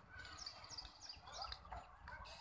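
A small bird chirping, faint short high calls about three times a second, over a faint low rumble.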